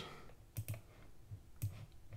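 Computer mouse clicking: a quick pair of clicks about half a second in, then another click about a second later, as a property listing is opened on screen.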